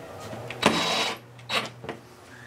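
DeWalt cordless driver running in short bursts as it drives a screw into a light fixture's metal trim ring on a plywood panel: a half-second run, then a briefer one near the end.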